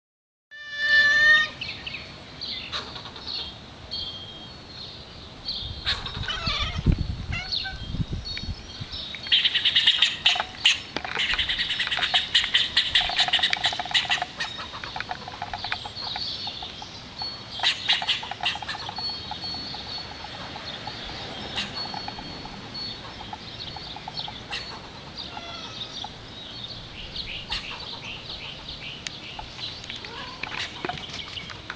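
A squirrel chattering its scolding alarm call: rapid runs of sharp chirps and clicks, densest from about nine to fourteen seconds in. A single loud pitched call sounds right at the start.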